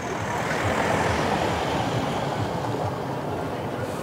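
A motor vehicle driving past, its noise swelling to a peak about a second in and slowly fading away.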